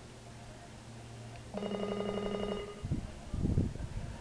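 Electric bell ringing for about a second, the judges' start bell telling the show-jumping rider to begin the round. It is followed by a few loud, low, muffled bumps.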